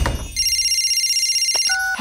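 Cartoon mobile phone ringing with a fast electronic trilling ring for about a second and a half. It ends in a short beep and click as the phone is answered.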